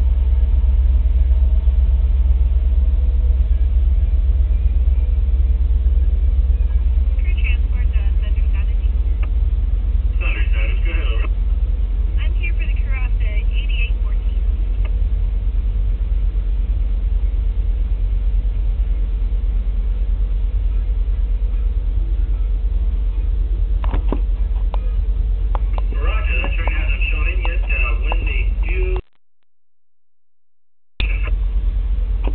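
A loaded BNSF coal train rolling past, with its rear distributed-power diesel locomotives approaching: a steady low rumble with a constant mid-pitched tone over it.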